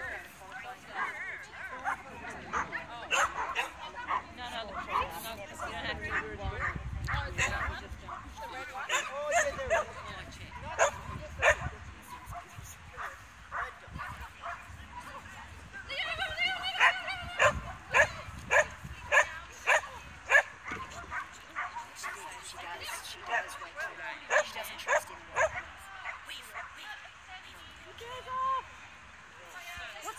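Dogs barking and yipping in short, repeated barks, with a fast run of barks about halfway through.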